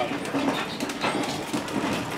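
Heritage railway carriage running behind a Class 37 diesel, a steady rumble, with a short murmur of a voice near the start.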